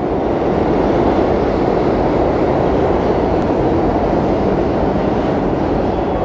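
Steady noise of a subway train running, with no music over it.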